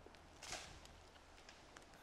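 Near silence: faint outdoor ambience, with one brief soft rustle about half a second in.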